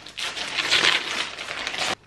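Silver gift-wrapping paper being torn open and crinkled by hand, a dense rustling crackle that cuts off suddenly just before the end.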